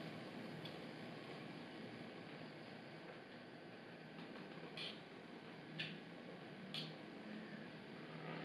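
Faint handling sounds of thin green 8-strand PE braided fishing line being rubbed back and forth through a stainless-steel rod guide ring in an abrasion test, with three light ticks about a second apart in the second half.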